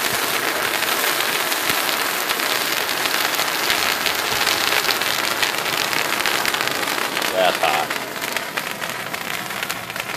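Old pyrotechnic fountain composition burning in a heap, throwing out sparks: a loud, steady hissing rush full of fine crackling that eases off near the end.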